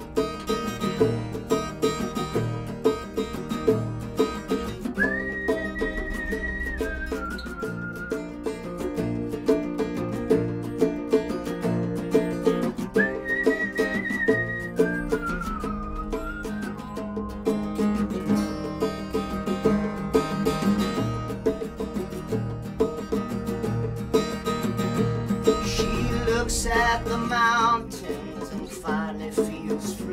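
Live acoustic trio playing an instrumental intro: two acoustic guitars strumming and picking over a hand drum, with a whistled melody on top. The whistle holds a high note and then falls, about five seconds in and again about thirteen seconds in.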